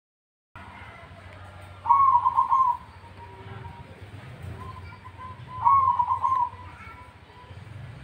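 Zebra dove (perkutut) cooing: two loud, trilled coo phrases about four seconds apart, with softer coo notes between them, over a steady low hum.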